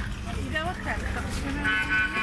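A car horn sounds as one steady tone, starting about a second and a half in and still going at the end, over a constant low rumble of traffic.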